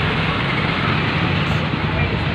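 Steady running noise of a vehicle's engine at idle, a continuous low drone with street noise around it.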